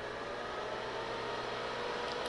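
Steady hum and hiss of a running HP 9825 desktop computer and bench equipment, with a faint steady whine.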